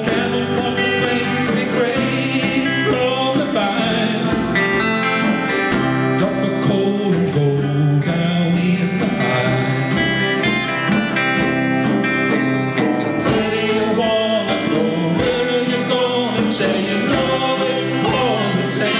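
A live trio playing a country-folk song on electric guitar, acoustic guitar and fiddle, at a steady level.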